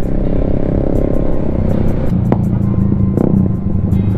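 Motorcycle engines and exhausts heard from the rider's seat on the move, a steady engine drone that turns deeper and louder about two seconds in. The loud exhaust is an open aftermarket 'demo pipe', called noisy.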